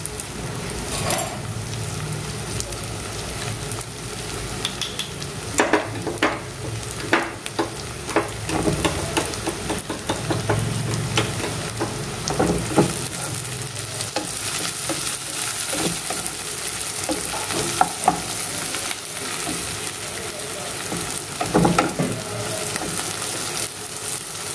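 Sliced onions sizzling in hot oil in a nonstick wok, with a steady frying hiss. A spatula stirs them now and then, scraping and knocking against the pan.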